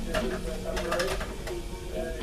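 Indistinct voices, with a brief run of sharp clicks in the first half and a steady low rumble underneath.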